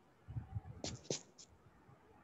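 Three short, faint clicks close together, about a second in.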